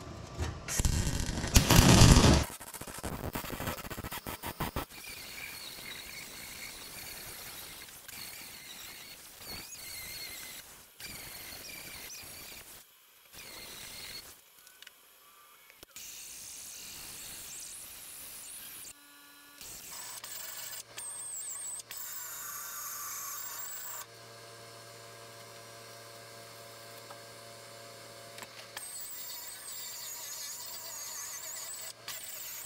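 MIG welder fully welding a sheet-steel patch, crackling and hissing in a series of runs that stop and start abruptly. The loudest burst comes about a second in.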